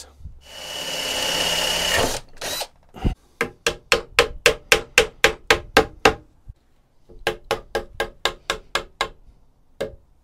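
A brief whirring noise lasts about two seconds, then a mallet drives a tapered wooden dowel peg through a pegged through-tenon joint in two runs of quick, even knocks, about four a second. The peg's fatter end is being wedged tight in the hole.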